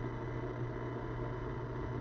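A steady low hum with a faint hiss, unchanging throughout, with no other sound.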